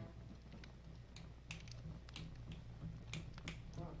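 Faint finger snaps setting the tempo before a count-off, a few a second, over a low steady hum.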